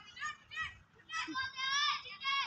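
A young child's high-pitched squeals and vocal sounds, several short calls and one longer one about a second in.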